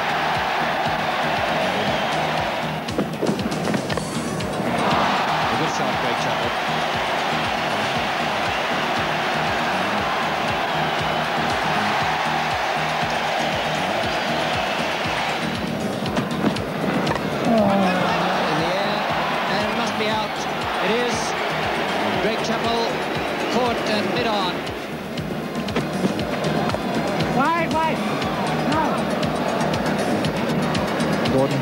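A large stadium crowd cheering and singing, with music mixed in. The noise is thick and steady, with short dips about three seconds in and around sixteen seconds.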